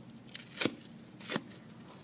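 Dry kitchen sponge's soft foam side ripped apart by hand: two short tears, the second about two-thirds of a second after the first, with a faint rustle of foam between.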